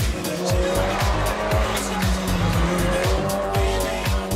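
Seat Leon TCR race car's engine at high revs, its pitch rising and falling as the driver works the throttle and gears, over background music with a steady beat.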